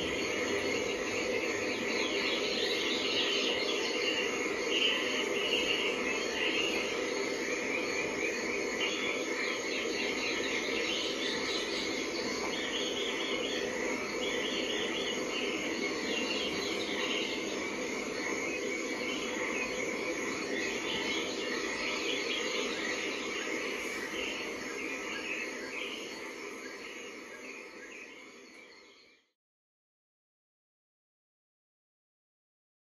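A dense, steady chorus of chirping insects and frogs, fading out near the end.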